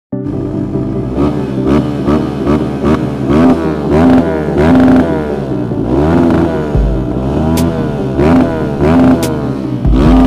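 Kawasaki KLX150's single-cylinder four-stroke engine being ridden hard, revving up and dropping back again and again as the throttle is worked.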